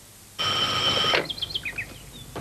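An old telephone's bell rings once, about a second long, starting suddenly. Then come a few short bird chirps.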